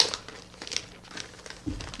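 Crinkling and crackling of a cross-stitch pattern and its packaging being handled, starting suddenly, with a soft low thump near the end.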